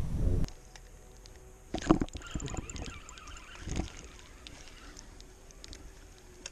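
Scattered faint clicks from a spinning rod and reel being handled, with two dull knocks about two and four seconds in. A low rumbling noise cuts off half a second in.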